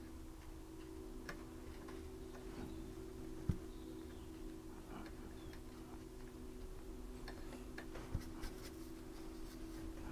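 Faint, irregular small taps and clicks of a watercolour brush dabbing on paper, over a steady low hum, with a soft thump about three and a half seconds in and two smaller ones near the end.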